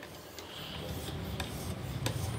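Whetstone on a guided fixed-angle knife sharpener being drawn across a clamped knife blade's edge: steel rasping on stone, with a few light clicks.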